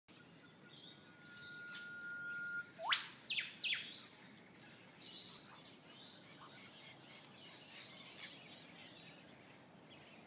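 Eastern whipbird calling: one long steady whistle, then three quick, sharp rising whip-crack notes about a second later, with faint chirps of other birds after.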